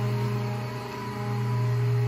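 Restored 1951 Delta 13×5 planer running idle on its original electric motor, no board feeding: a quiet, steady hum.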